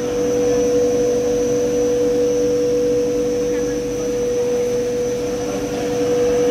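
Polyethylene film blowing machine running on a test run: a steady mechanical hum with a constant mid-pitched whine and an even rush of air.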